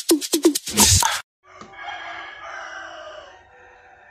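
About a second of music with a quick repeating beat cuts off abruptly. A moment later a rooster crows once, a long call of about two seconds that tails off.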